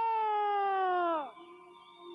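A long, high wailing voice held on one note, sagging in pitch and dying away about a second and a quarter in.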